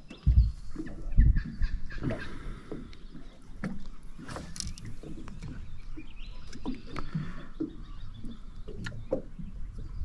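Handling noise as a small redfin perch is unhooked from a lure by hand: two low thumps in the first second and a half, then scattered light clicks and ticks of hook, lure and fish.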